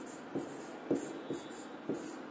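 Pen writing on an interactive whiteboard screen: about four short taps and scratches, roughly one every half second, as a word is written.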